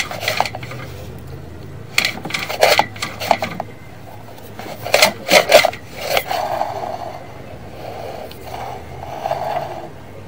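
Sewer inspection camera head with centering guides knocking and scraping against the pipe as it is pushed along: clusters of sharp clattering knocks about two seconds in and again around five seconds, then rougher scraping through the second half.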